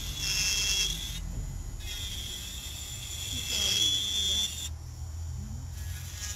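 Electric nail drill (e-file) running with a steady high whine as it works on an acrylic nail, cutting out twice briefly, about a second in and again near the end.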